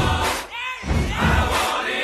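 A large concert crowd cheering and chanting over music with a heavy low beat, the sound of a live stadium show.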